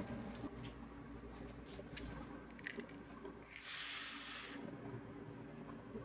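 Faint light clicks of green coffee beans being picked out by hand and dropped onto a weighing tray, then about a second of rattling hiss past the middle as the beans are poured into the steel hopper of a ROEST sample coffee roaster.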